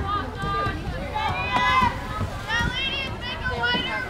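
Several high-pitched voices shouting and calling out across the field, overlapping, with no clear words.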